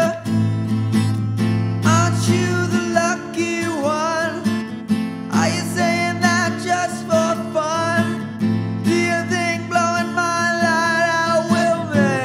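Acoustic demo of an indie folk-punk song: a strummed acoustic guitar with a sung vocal line over it, recorded with reverb.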